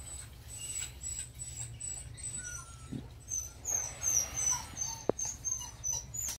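Short, high-pitched animal chirps repeating again and again, louder in the second half, with a sharp click about five seconds in.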